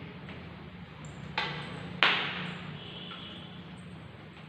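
Two sharp knocks about two-thirds of a second apart, the second louder and ringing briefly in the room, over a low steady hum.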